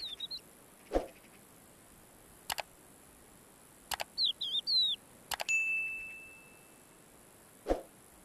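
Short bird chirps at the start and again about four seconds in, over quiet ambience. Sharp clicks and a bell ding from the overlaid subscribe-button animation follow; the ding rings out and fades over about a second and a half.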